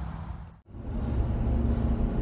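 Steady low road rumble inside a moving vehicle's cabin, engine and tyre noise with a faint hum. It starts after a brief drop-out about half a second in and follows a short stretch of low outdoor rumble.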